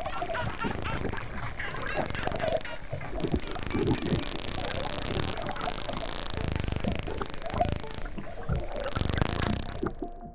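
Dolphins vocalizing underwater: many high whistles sweeping up and down, mixed with clicks and chattering pulses.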